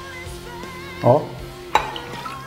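Liquid pouring into a small glass and then into a stainless steel cocktail shaker, with a brief louder sound about halfway and a sharp clink near the end, over soft background music.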